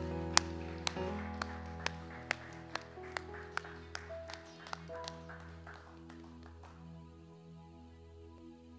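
Keyboard holding soft sustained chords that slowly fade out, with hand claps about twice a second that grow fainter and stop near the end.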